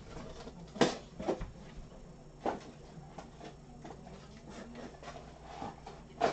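Boxes of cat food being handled and set down on a counter: a sharp knock just under a second in, the loudest, another about two and a half seconds in, and lighter clunks between.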